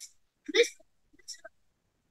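A man's brief vocal noise, a short throat or mouth sound, about half a second in, followed by a couple of faint clicks; otherwise near silence.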